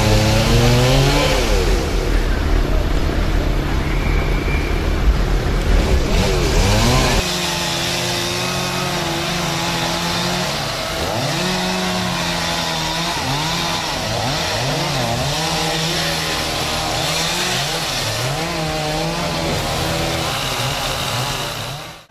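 Chainsaws revving up and down again and again as they cut through a logjam of trunks and branches. A heavy low rumble underlies the first seven seconds and cuts off abruptly.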